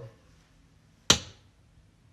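A single sharp clack about a second in, with a short ringing tail: a small object landing upright on the countertop after being flipped.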